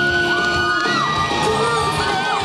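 Recorded stage music playing in a hall, with several high voices whooping and cheering over it in long, overlapping rising squeals.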